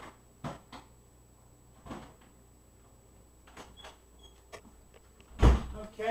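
Scattered light clicks and knocks of handling, a few seconds apart, then one much louder thump with a deep low end near the end.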